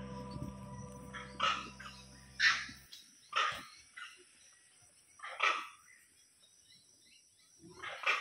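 Wild animal calls: about six short, loud, barking calls at uneven intervals, heard over a steady high-pitched hiss. Soft background music fades out in the first three seconds.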